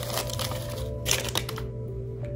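Crumpled packing paper crackling and rustling as a small glass piece is dug out of it, in irregular bursts that are loudest about a second in, over soft background music.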